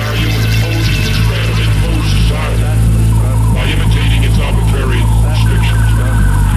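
Electronic hip-hop music with a loud, steady low bass drone under wavering higher synth lines.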